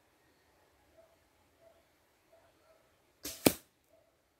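An arrow shot from a traditional bow arriving and striking into the ground close by: a brief whoosh of flight, then one sharp thwack of impact about three and a half seconds in.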